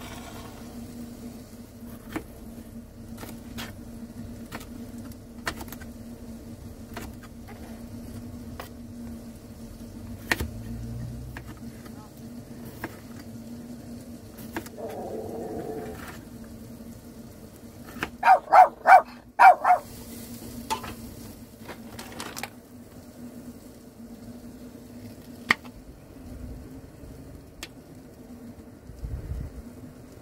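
Lunch being made in a camper van's small kitchen: scattered light clicks and knocks of utensils over a steady low hum. About eighteen seconds in comes a quick run of five loud, pitched sounds.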